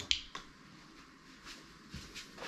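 A sharp click just after the start, then a lighter click about a quarter second later and a faint one near the end, against quiet room tone: small handling noises of objects close to the microphone.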